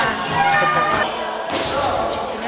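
Indistinct voices with a few dull thuds on the floor from people training.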